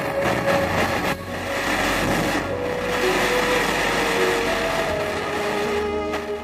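Steady hiss of a gas torch flame playing on a small piece of silver, dipping briefly about a second in, with soft background music underneath.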